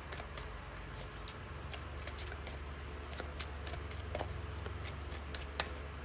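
A deck of oracle cards being shuffled by hand, giving irregular light clicks and snaps of card edges. A steady low hum runs underneath.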